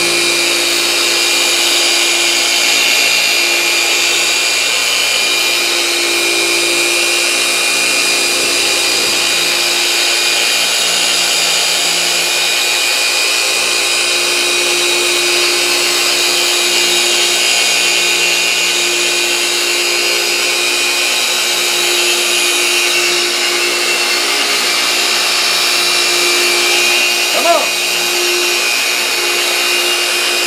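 Griot's Garage G15 15 mm long-throw orbital polisher running steadily on speed 4 while its foam pad works finishing sealant over a painted panel. A single short chirp comes near the end.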